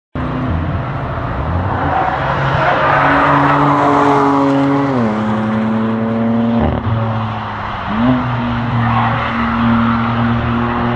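Two BMW saloons' engines passing through a corner on the track: the engine note holds steady, drops in pitch about halfway through, breaks briefly near seven seconds, then climbs again as a car accelerates away.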